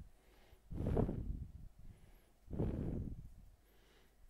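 A man breathing out twice into a close microphone, two soft noisy breaths each under a second long, about a second in and again near three seconds.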